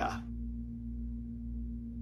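A steady background hum holding one constant pitch, with the end of a spoken word at the very start.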